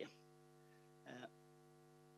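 Near silence with a steady, low electrical mains hum, and a brief spoken "uh" about a second in.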